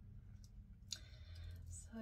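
Quiet room with a low hum; a sharp click just under a second in, followed by a soft, breathy hiss.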